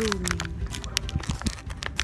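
Plastic candy bag crinkling as it is held and handled, heard as scattered sharp clicks and rustles.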